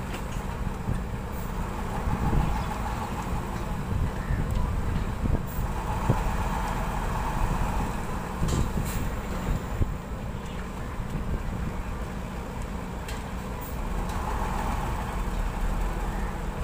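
Concrete transit mixer truck's diesel engine running as the truck manoeuvres, its sound swelling three times, with a few short clicks or knocks mixed in.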